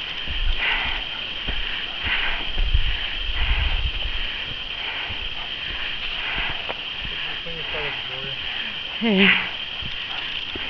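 Walking noise on a bush track: footsteps and camera handling, with a low wind rumble in the first few seconds over a steady high hum. A brief voice comes near the end.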